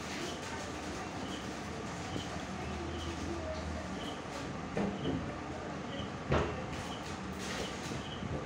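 Close-up eating sounds, a few short mouth smacks and clicks as rice and okra are eaten by hand from a steel plate, over a steady background hum and hiss. The loudest click comes a little past six seconds in.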